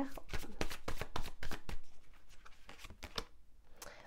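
A deck of tarot cards being shuffled by hand: a quick run of card clicks and slaps that thins out in the second half, with a brief pause about three seconds in.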